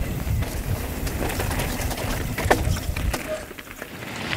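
A mountain bike rolling and landing on a dirt trail: tyre rumble on the dirt with sharp clicks and rattles from the chain and frame. It dies down about three seconds in.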